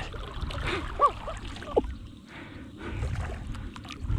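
Water lapping and sloshing around a kayak with a steady low rumble, broken by a few short chirp-like tones that rise and fall about one and nearly two seconds in.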